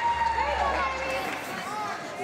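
Several overlapping voices, many of them high-pitched like children's, calling out and talking at once. A low steady hum lies under the first second or so.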